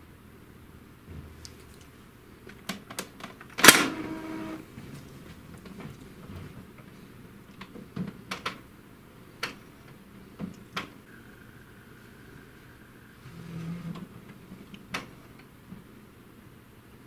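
Epson Stylus Photo TX650 inkjet printer running its power-on initialisation: a series of mechanical clicks and short motor whirs from the print carriage and feed mechanism, with one sharp clunk and a brief ringing about four seconds in and a thin motor whine lasting about two seconds near the end.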